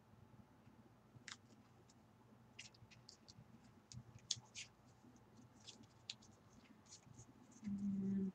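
Faint handling sounds of paper and adhesive tape: scattered small ticks and rustles as tape is laid along card stock by hand.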